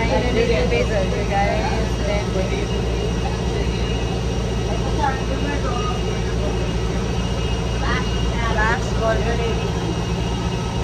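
Steady low drone of an airport shuttle bus running, heard from inside its cabin, with other passengers' voices faintly in the background.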